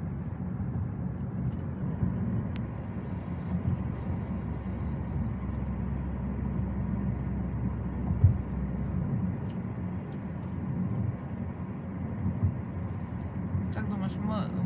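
Road and engine noise heard inside the cabin of a moving car: a steady low rumble of tyres and engine, with a brief thump about eight seconds in.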